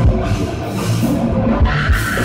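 Live heavy metal band playing loud: distorted electric guitars over a pounding drum kit. A vocalist's harsh sung shout comes in near the end.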